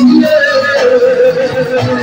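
Music with a voice singing one long held note that wavers slightly in pitch.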